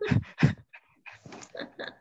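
A young man laughing, heard through a headset microphone over a video call: two strong bursts of laughter near the start, then a run of quieter, breathy laughs.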